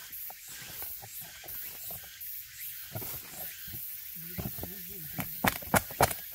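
A hand tool knocking and prying against the trunk of a Korean cork oak as its thick bark is stripped off, a few sharp knocks near the end, over a steady high hiss.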